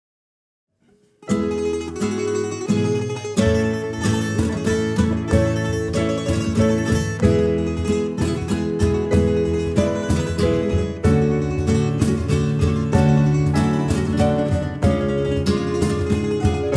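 About a second of silence, then a band starts the instrumental opening of a Valencian riberenca: plucked acoustic guitar and llaüt over bass, piano and drums, with many quick plucked-string strokes.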